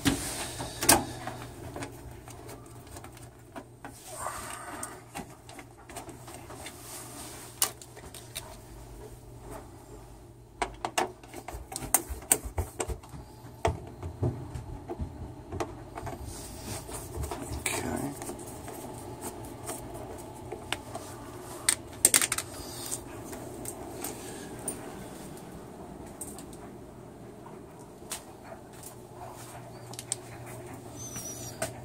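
Sheet-metal furnace door panel being fitted back on and its screws turned with a hand nut driver: scattered metallic clicks and knocks, in clusters, over a steady low hum.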